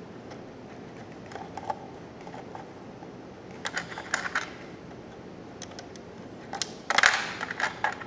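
Small plastic wrestling action figures being handled and set down in a toy ring: scattered light clicks and taps, with a quicker, louder cluster of clatter near the end.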